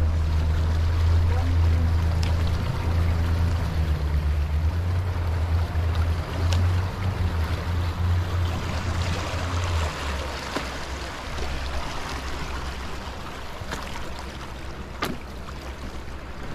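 A wide, fast river rushing past a rocky bank, with wind rumbling on the microphone; the rumble eases about ten seconds in.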